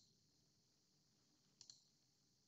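Near silence with faint computer mouse clicks: one at the start and two in quick succession about one and a half seconds in.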